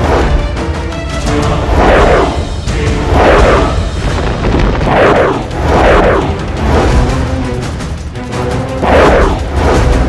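Dramatic soundtrack music with repeated magic-blast sound effects laid over it: about six loud whooshing booms, each falling in pitch, one every second or two.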